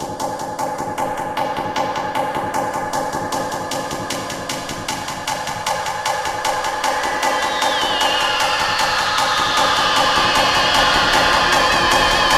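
Schranz hard techno track in a build-up: a fast run of repeated percussive hits over sustained synth tones, growing steadily louder, with a wavering higher synth line coming in about halfway through and little deep bass.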